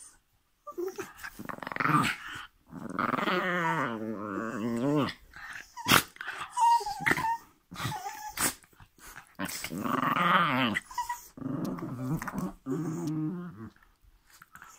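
Dogs play-fighting at close range, growling in several long bouts that waver in pitch, broken by a couple of sharp clicks.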